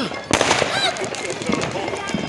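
A firework bang about a third of a second in, followed by a crackling haze of further fireworks.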